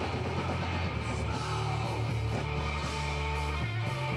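Noise-rock band playing live: distorted electric guitar and heavy low end over drums and cymbals, with the singer's vocals in the first part.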